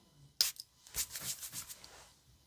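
Perfume bottle's pump atomiser sprayed once about half a second in, a short sharp hiss, followed by fainter handling sounds.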